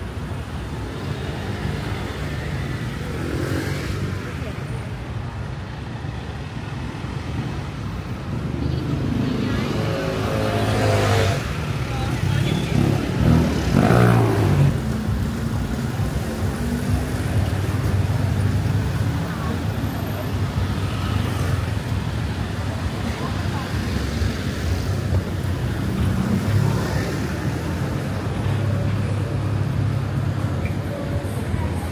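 Busy city street traffic: cars and motorbikes running past with a steady low engine hum, and one louder vehicle passing close near the middle, its pitch rising and then falling.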